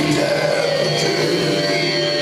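Live metal band playing loud amplified electric guitars, with the singer's voice over the PA.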